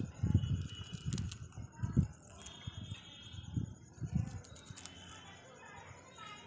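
A rose-ringed parakeet nibbling a biscuit held in its foot inside a metal cage: scattered small crunching clicks and irregular low knocks. A short high-pitched tone sounds about halfway through.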